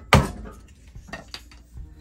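Metal box cheese grater knocking as a wooden insert is pounded down into its bottom by hand: one sharp knock just after the start, then a few lighter taps and rattles.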